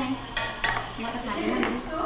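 Metal spatula stirring and scraping in a cooking pan, with two sharp clinks about half a second in, over the sizzle of food frying.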